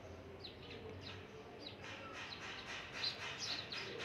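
Faint chirping of small birds: a string of short, high, falling chirps that come more often in the second half.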